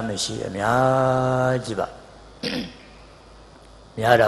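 A man's voice: a few quick syllables, then one long drawn-out syllable held at a steady pitch for about a second before it falls away. A short breathy hiss follows about two and a half seconds in, then a pause.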